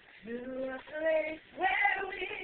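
Unaccompanied singing: a voice holds three separate notes, each a little higher than the one before, and the last is the loudest.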